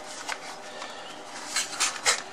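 Small cardboard vacuum-tube boxes being handled, with a few brief rustling scrapes near the end over a steady background hiss.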